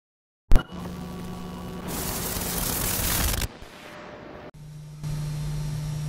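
Silence broken by a click, then steady recording hiss with a low electrical hum in a quiet room. The hiss swells for about a second and a half midway, then drops, and the hum comes back stronger near the end.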